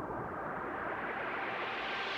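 Psytrance break playing from the production session: a synth noise riser sweeping steadily upward in pitch over held pad tones, building toward the drop.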